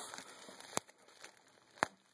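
Bubble wrap and plastic packaging being handled, with a faint rustle at first and then two sharp clicks about a second apart, the second louder.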